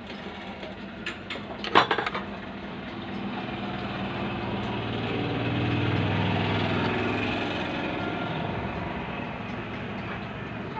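A few sharp clicks and rattles about one to two seconds in, then a low engine-like drone that swells over several seconds and fades again.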